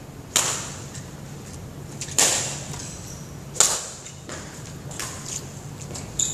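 Badminton rackets striking a shuttlecock in a rally: three sharp hits, about a second and a half to two seconds apart.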